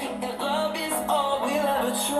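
Music with a singing voice over a steady low pulse, played through an Asus Vivobook X1500E laptop's built-in speakers, with little deep bass.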